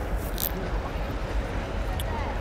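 Busy river ambience: a steady low rumble with faint distant voices and a short click about half a second in.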